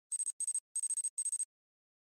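Four short bursts of a high, thin squeaking tone with hiss, in quick succession over about a second and a half, laid over the end logo as a sound effect.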